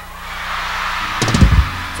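Live audience crowd noise (laughter and applause) swelling in response to a punchline. About a second in, the stage band's drums land a short, loud hit, the loudest moment.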